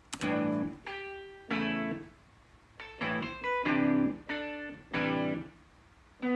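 Shreddage 3 Stratus Free, a sampled Stratocaster-style electric guitar virtual instrument, playing a riff: short chords alternating with single notes, each phrase ringing for about half a second with short gaps between them.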